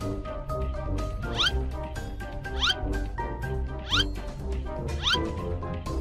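Background music for a children's video, with a steady beat and sustained tones. A short rising glide, like a slide whistle, recurs four times about every second and a quarter.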